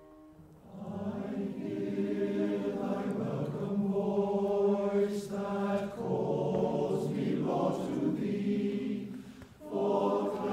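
A congregation singing a hymn together in unison. The voices come in about a second in, after a keyboard introduction, and pause briefly between phrases, with a breath near the end.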